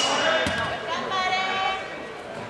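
A person's drawn-out call echoing through a large sports hall, with a single dull thud just before it, about half a second in.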